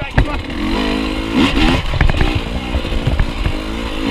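KTM dirt bike engine running at low speed on a rough trail, revving up and dropping back briefly about a second and a half in. Sharp knocks from the bike over rough ground.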